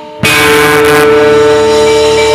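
Javanese gamelan music accompanying a jaran kepang dance. After a brief lull, the ensemble comes in with a loud struck stroke about a quarter second in. Ringing metallophone and gong tones are then held steady.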